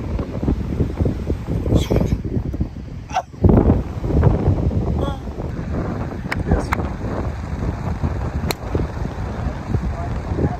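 Wind buffeting a phone microphone, a steady low rumble throughout with faint indistinct voices. About eight and a half seconds in comes a single sharp click: a driver striking a golf ball off the tee.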